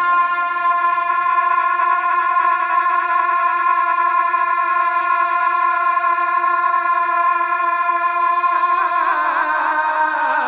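Male naat reciter holding one long sung note, unaccompanied and steady with a slight vibrato, then wavering and sliding down in pitch near the end.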